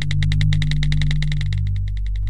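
Intro music: a sustained deep bass note under a fast, even ticking of about twelve ticks a second.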